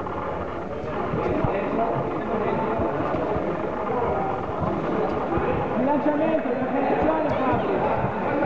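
Crowd of spectators talking over one another in a hall, a steady babble of many voices, with a few soft thuds among them.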